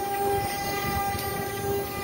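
CNC router spindle running a 2 mm ball-nose bit on a finishing pass: a steady whine of several held tones over a constant machine hiss.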